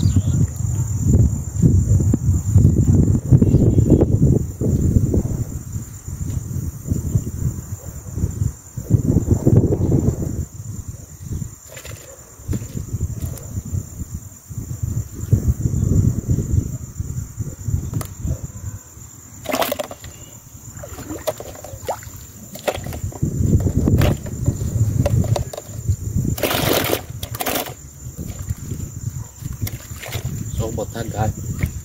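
A steady high insect chorus of crickets with uneven low wind rumble on the microphone, and a few brief rustles in the second half.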